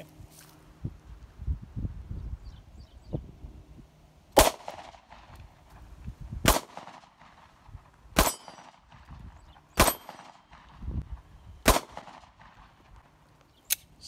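SIG Sauer P938 SAS Gen 2 micro-compact 9mm pistol fired five times in slow succession, the shots about one and a half to two seconds apart.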